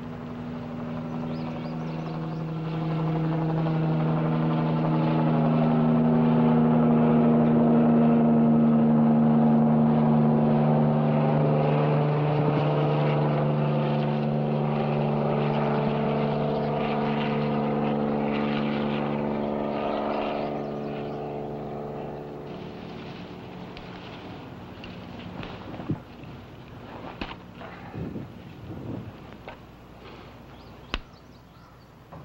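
Propeller aircraft flying over: its engine drone builds over the first few seconds, peaks, then fades away after about twenty seconds. Near the end come a few sharp clicks and rustles.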